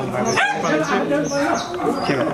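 Several men's voices talking over one another.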